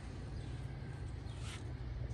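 Quiet outdoor background: a faint, steady low rumble with no distinct event.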